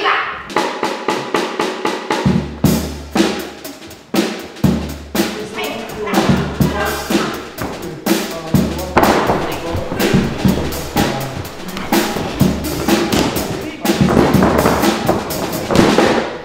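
Drum kit played in a fast, busy rhythm: snare and bass drum hits throughout, with cymbal wash in places.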